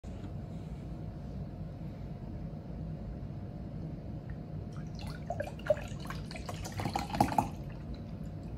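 Milk poured from a cardboard carton into a tall glass, gurgling and splashing for about two and a half seconds in the second half, over a steady low hum.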